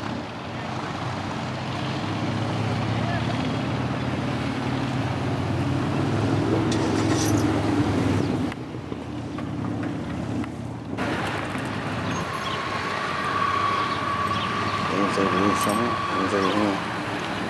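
An engine running steadily at low pitch, rising a little about six to eight seconds in. Later a steady high tone comes in, with voices near the end.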